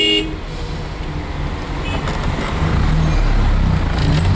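A car horn blast that cuts off just after the start, then road traffic noise with a low engine rumble that grows louder in the second half.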